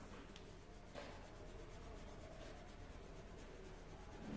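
Very quiet handling at a desk: two faint light clicks, about a third of a second and a second in, against low room tone.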